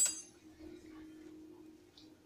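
A single short clink of a metal spoon against a dish right at the start, with a brief high ring that dies away quickly, followed by a faint steady low hum.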